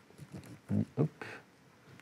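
A man muttering a few short, quiet syllables under his breath about a second in, with faint clicks of typing on a laptop keyboard.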